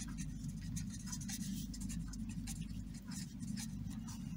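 A pen writing on paper by hand: a run of quick, faint scratching strokes as a few words are written out.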